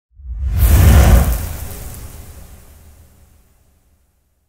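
Logo-intro sound effect: a whoosh with a deep rumble that swells in quickly, is loudest about a second in, and then fades away.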